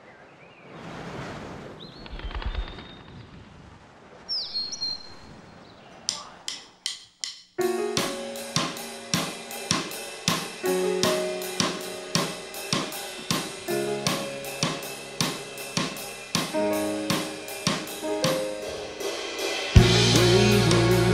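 Soft whooshing swells, then a few sharp clicks, then a drum kit played with sticks starts a steady beat, roughly two to three hits a second with cymbal, under held pitched notes. Right at the end the full band comes in much louder.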